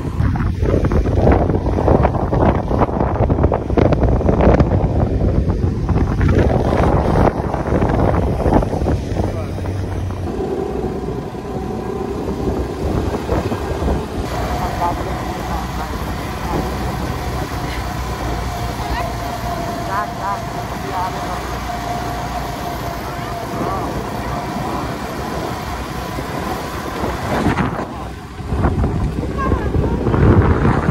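Motorcycle engine running while riding along a road, mixed with a steady rush of wind on the microphone. About midway a steady, level engine tone settles in.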